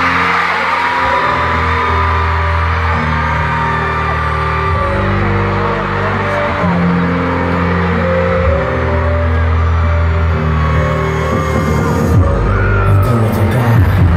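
Loud live concert music over a PA, recorded from the crowd: slow sustained keyboard and bass chords with high screams from fans around the recording phone. A beat comes in near the end.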